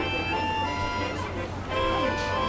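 Accordion playing a melody of held notes that shift in pitch a few times.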